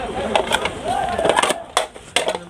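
Melamine plates and bowls clattering as they are picked out of stacks, a few sharp plastic clacks and knocks.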